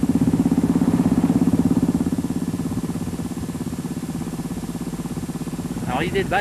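Rally motorcycle engine running at a steady speed, heard from an onboard camera, with a fast, even pulse; it drops somewhat in level after about two and a half seconds.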